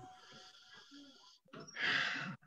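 A person breathing close to a microphone: a faint airy breath, then a louder, short exhale near the end.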